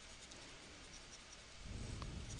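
Faint scratching of a stylus writing on a tablet screen.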